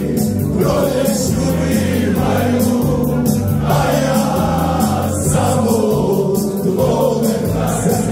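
Live Herzegovinian folk song: a male singer on microphone backed by keyboard, with sustained bass notes and a steady beat.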